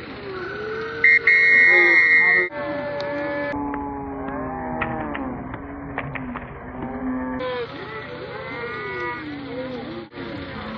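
Youth football game crowd sound: many voices of spectators and players yelling and shouting over one another. A long steady high tone about a second in, and a few sharp clacks near the middle, typical of pads and helmets colliding.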